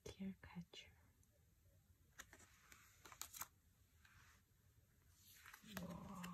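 Quiet handling of glossy oracle cards: a few faint clicks and slides in the middle as cards are swapped. A soft, murmured voice comes in at the start and again near the end.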